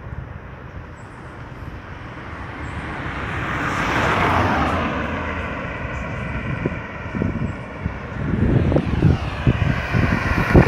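A car passes close by, its tyre and engine noise swelling to a peak about four seconds in, then falling in pitch and fading as it drives off. Another car is approaching near the end, with wind buffeting the microphone.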